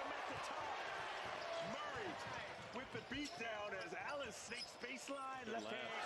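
Faint broadcast audio of a basketball game: the ball being dribbled and sneakers squeaking in short chirps on the hardwood, over a steady arena crowd murmur.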